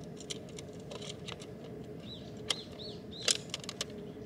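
A bird giving short arched chirps, several of them in the second half, over irregular light clicks and taps, with the loudest cluster of clicks about three seconds in. A faint steady hum runs underneath.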